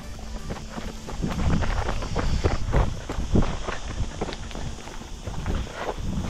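Trail runners' footsteps going quickly downhill on a dry dirt path, several uneven steps a second, with trekking poles striking the ground.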